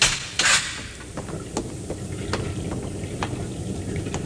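Radio-drama sound effects: a ship's metal hatch clanking open with two sharp sudden noises at the start, then the steady low rumble of a ship at sea with wind, dotted with light clicks.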